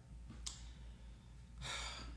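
A person breathes in audibly, a breathy sigh near the end, with a short mouth click about half a second in. A faint low hum runs underneath.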